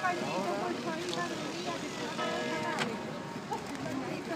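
People talking as they walk past, with church bells ringing behind them in steady, held tones.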